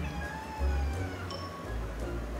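A cat yowling in a drawn-out, falling voice at its first meeting with a puppy, over steady background music.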